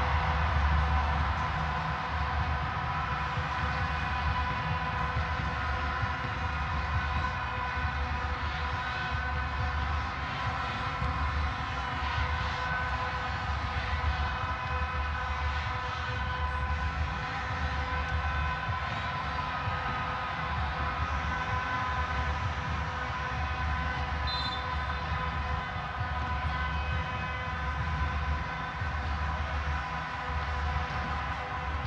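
Football stadium ambience: a steady drone of many held horn tones over a low crowd rumble.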